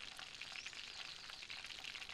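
Faint, steady sizzling crackle of food frying, made of many tiny quick pops.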